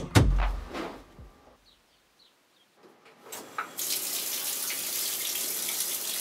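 Water running from a tap into a sink, coming on about three seconds in and flowing steadily. Before it, a couple of deep booming hits fade away into near silence.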